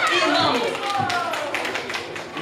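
Indistinct voices in a large room, with a scatter of light, irregular taps through them.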